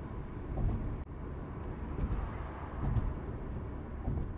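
Steady low rumble of road and engine noise inside a moving car's cabin, with a few soft low bumps.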